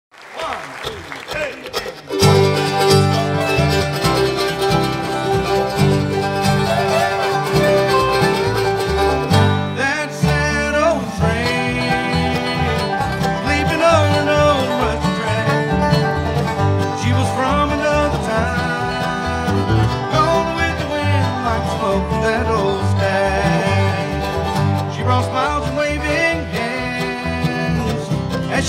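Bluegrass band playing an instrumental introduction live on banjo, mandolin, acoustic guitar, dobro and upright bass. It starts quieter and gets louder about two seconds in.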